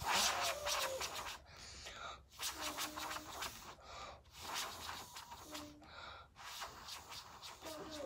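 A girl blowing on freshly painted fingernails to dry the polish: a series of breathy puffs, about one every second and a half.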